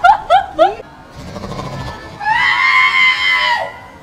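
Young women screaming in fright: a few short rising yelps at the start, then one long, high scream held for over a second.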